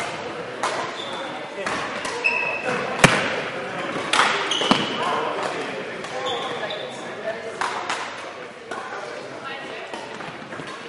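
Badminton rally in a large, echoing sports hall: sharp racket strikes on the shuttlecock, the clearest about three seconds in and again near five seconds. Short high squeaks of court shoes on the floor and indistinct voices from around the hall are heard throughout.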